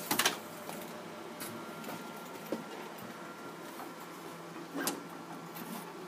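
Handling noises as a sheet of foam board is set into the bed of a laser cutter: a sharp clatter just after the start, then scattered light knocks and scrapes over a faint steady hum.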